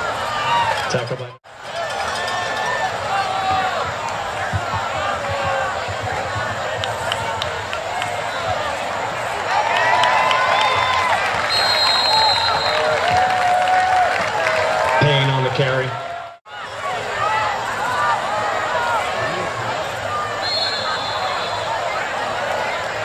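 Football crowd and players: many voices talking and shouting at once, louder from about ten seconds in. Two short, high referee's whistle blasts sound about twelve seconds in and near the end, and the sound cuts out briefly twice.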